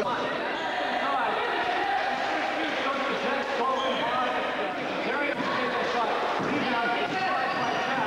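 Several voices talking and calling out over one another during a basketball game, with a basketball bouncing on the court a few times.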